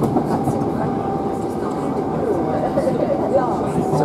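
Southern Class 377 Electrostar electric multiple unit running at speed, heard from inside the passenger car: a steady rumble of wheels on rail, with a steady whine coming in about a second in.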